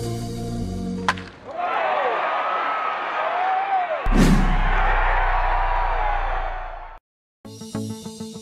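Intro-sting sound design: electronic music cuts off with a hit about a second in, then a swirling whoosh with sliding pitches builds to a sharp impact and deep boom at about four seconds. After a brief silence, plucked-string music begins near the end.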